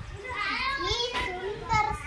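Speech only: a young boy talking in a high child's voice.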